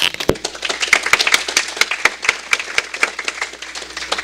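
Audience applauding, a dense patter of hand claps that thins out near the end.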